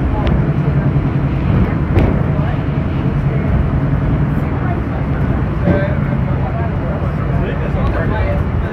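Walt Disney World monorail running at speed, heard from inside the passenger cabin: a steady low hum and rumble from the train, with a brief sharp click about two seconds in.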